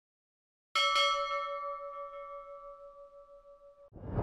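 A single bell chime sound effect, struck about three-quarters of a second in and ringing down slowly for about three seconds before cutting off abruptly just before the end.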